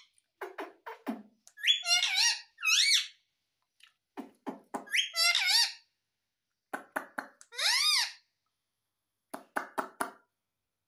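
Indian ringneck parakeet vocalizing in bursts: each group starts with a few sharp clicks, followed by rising-and-falling squeaky calls, repeated about five times with short gaps.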